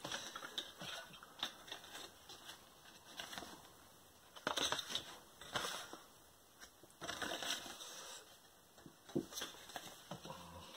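A cassette tape's plastic case and folded paper inlay card being handled and unfolded: faint, intermittent rustling of paper with a few small plastic clicks.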